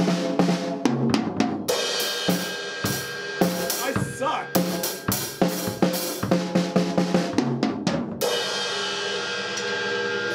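Acoustic drum kit played in a quick fill-filled groove: hits on wood-shell toms, snare and bass drum, with Zildjian cymbals. About eight seconds in the playing stops on a final hit that is left ringing.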